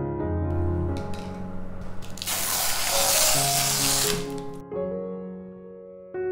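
A hiss like a spray, faint from about half a second in, then loud for about two seconds before it cuts off, over soft piano background music.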